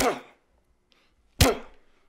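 A man coughing twice, harsh sudden coughs about a second and a half apart, each trailing off in a falling voiced tail.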